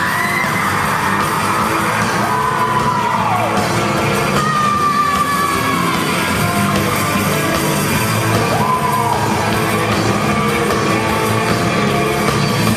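Live rock band playing loud in a large hall, heard from the audience: electric guitars, drums and keyboard, with sung vocals in long notes that slide in pitch.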